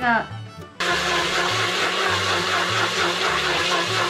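Countertop electric blender switched on about a second in and running steadily, whirring through cream cheese and milk.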